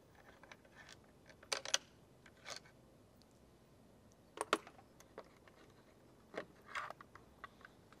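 A few faint, scattered metal clicks and clinks from hand tools: a socket on an extension and a long bolt just turned out of the top-box mounting plate being handled, the loudest pair of clicks about four and a half seconds in.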